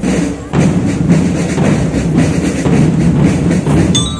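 Marching drum band playing: drums beating a loud, steady marching rhythm.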